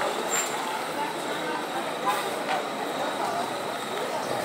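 Itapemirim double-decker coach moving slowly and turning on a cobblestone street, its engine running, with people's voices around.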